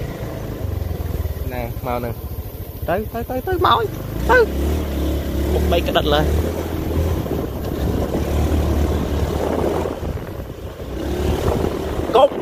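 Motorcycle engine running steadily while riding a dirt trail, a continuous low rumble that grows stronger from about four seconds in.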